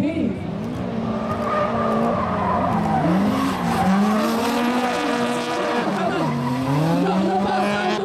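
Two drift cars in a tandem run, engines revving up and down as they slide sideways, with tyre squeal from the spinning rear wheels. The revs drop and climb again near the end.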